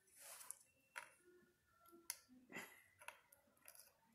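Faint clicks and handling noise of small alligator clips and test-lead wires being fitted onto a subwoofer's voice-coil terminals, several separate clicks spread across a few seconds.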